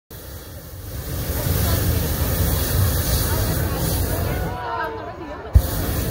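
Hot air balloon's propane burner firing in a long steady blast that cuts off about four and a half seconds in. After a second of crowd voices, a sharp bang and the burner fires again near the end.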